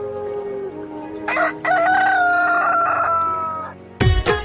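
A rooster crowing once, a single long call of about two and a half seconds with a slightly falling pitch, over a sustained musical drone.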